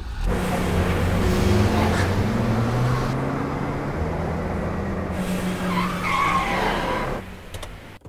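A car driving through city traffic, its engine and road noise humming steadily, with the hum rising in pitch early on as the car picks up speed. The sound fades away near the end.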